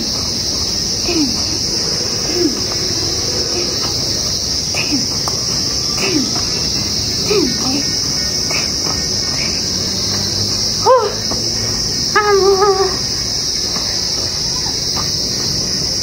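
Steady, high-pitched chorus of insects. Short low sounds that fall in pitch recur about once a second, and a couple of higher calls come near the end.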